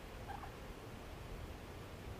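Quiet pond-side outdoor ambience: a low steady rumble, with one short faint bird call about a third of a second in.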